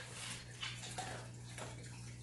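Rustling and crinkling of a treat pouch as hands dig out a food reward, with a couple of small ticks about half a second and a second in, over a steady low hum.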